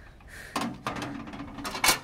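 Glass microwave turntable plate handled and lifted out of the oven, with low rubbing noise, then one sharp clink near the end as it is set down on the microwave's metal top.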